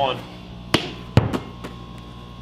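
A basketball thudding twice on a hard surface, about half a second apart, the second thud the louder, with a few lighter taps after it, over a steady background hum.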